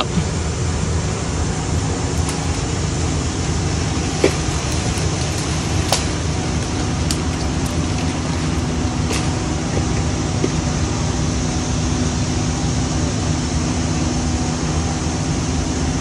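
Crane's engine running steadily as the boom lifts a rigged limb away, a low drone with a held hum, broken by a few faint knocks.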